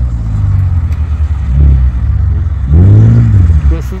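A sports car's engine running loudly with a deep low note, swelling briefly and then revving up and back down once about three seconds in.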